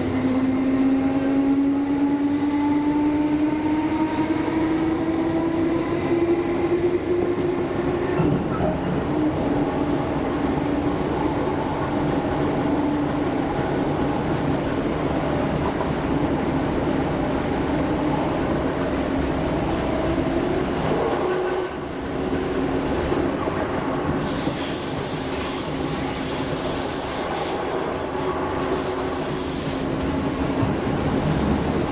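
Class 317 electric multiple unit heard from inside the carriage while moving: its motors give a whine that rises in pitch over the first eight seconds or so as the train picks up speed, then holds steady over the running rumble of wheels on rail. A high hiss comes in about 24 seconds in, lasts a few seconds, and returns briefly near the end.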